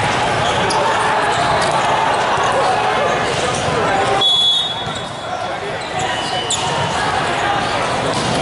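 Echoing din of a crowded volleyball tournament hall: many voices talking and calling over one another, with scattered thuds of volleyballs being hit and bouncing. The din eases briefly a little past the middle.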